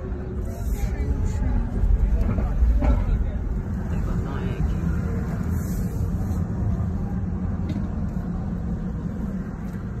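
Low rumble of a car's road and engine noise heard from inside the cabin while driving slowly in city traffic, swelling briefly about two to three seconds in.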